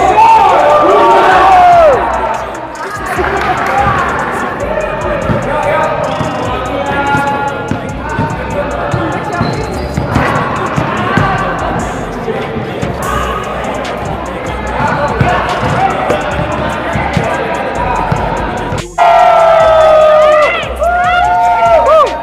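Basketball court full of people: a crowd of voices, with basketballs bouncing on the hard floor and sneakers moving. It opens with loud group shouting, and near the end, after a sudden break, there are loud whoops and cheering from the group.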